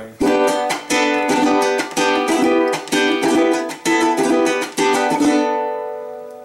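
Venezuelan cuatro strummed in a quick, steady rhythm, the chord changing about once a second as free fingers add and lift notes over the chord shape. The last chord is left ringing and fades out.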